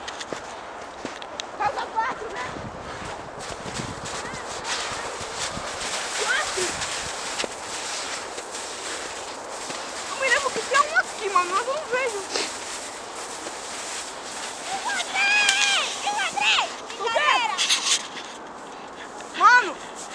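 Crunching and scraping in snow as hands dig through it. Children's high voices call out twice, around the middle and again near the end.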